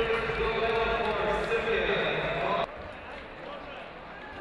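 Echoing speech over a loud background that cuts off abruptly about two-thirds of the way in. A quieter arena background with a few faint clicks follows.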